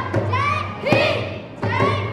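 A group of children's voices chanting together in short rhythmic phrases, about one phrase a second, with dholak drum strokes thudding under the chant.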